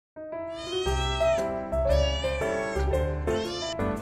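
Three drawn-out cat meows, each rising and falling in pitch, over background music with held notes and a bass line.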